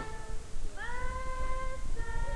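A high voice singing long held notes, each sliding up into its pitch, with a new note starting a little under a second in and another at the end.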